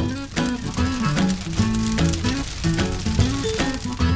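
Instrumental theme music with guitar, over a bass line that slides from note to note.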